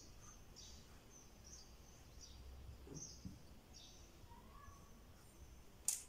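Near silence with a few faint, short, high-pitched chirps scattered through it, and one sharp click just before the end.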